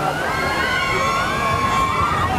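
Log flume riders screaming together as their log goes down the big drop: several long, wavering screams held for most of the two seconds over crowd noise.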